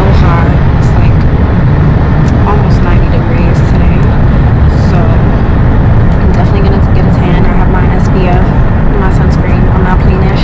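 Loud, steady low rumble of road and wind noise in a moving car, with a woman's voice talking over it, partly buried under the noise.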